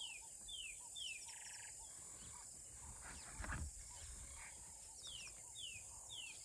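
A small bird singing a repeated phrase: three quick falling whistles followed by a short buzzy trill, heard twice. A low thump comes about halfway through, over a steady high hiss.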